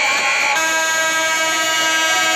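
A loud buzzer sounds about half a second in and holds one steady, harsh pitch to the end. A high steady tone runs just before it.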